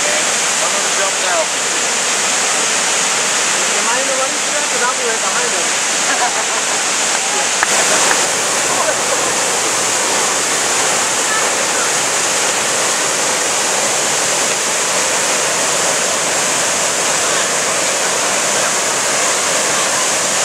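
Steady loud rush of a large waterfall. Faint voices of people are mixed in, and about eight seconds in the sound shifts slightly, with a little more low rumble.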